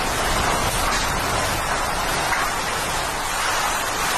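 Hurricane-force wind and driving rain: a steady, loud rushing noise with no letup.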